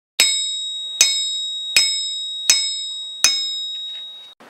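Five evenly spaced metallic strikes, about three quarters of a second apart, each ringing out with a high, bell-like tone that fades before the next.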